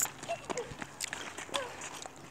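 Footsteps scuffing on asphalt, several irregular steps, with a few brief fragments of voices.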